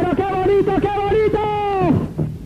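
A voice sample in a dance-music mix: one held vocal phrase at a fairly steady, high pitch that falls away near the end, in a gap where the piano riff and beat drop out.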